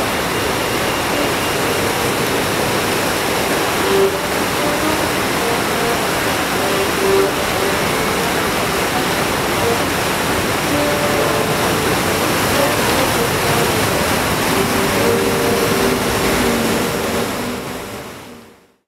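A steady rushing noise with a faint accordion melody in short phrases beneath it. Both fade out at the very end.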